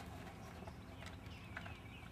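Faint footfalls of a yearling horse walking on soft dirt, with a few light knocks, and faint high bird calls in the second half.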